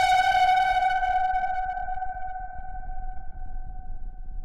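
A single sustained electronic synthesizer note ringing alone and slowly fading, its brighter overtones dying away first, as an EDM track closes.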